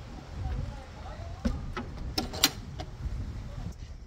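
A shed door being shut and locked: a few sharp metal clicks and rattles from its latch and lock, clustered around the middle, over a steady low rumble of wind on the microphone.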